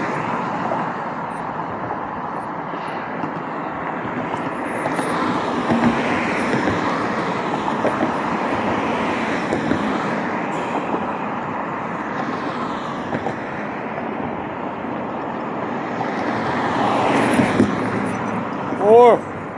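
Street traffic: cars passing on the road, a steady rush of tyres and engines that swells about six seconds in and again shortly before the end.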